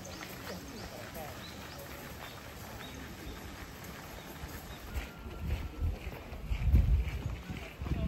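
Faint voices of people talking. About five seconds in come irregular low thuds and rumbles, the loudest near the end.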